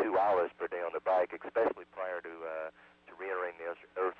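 A crew member speaking over the shuttle's space-to-ground radio link. The voice sounds narrow and telephone-like, with a steady low hum underneath and a short pause about three quarters of the way through.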